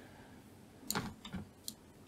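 A few faint, short clicks of a computer mouse and keyboard over quiet room tone, about a second in and again near the end.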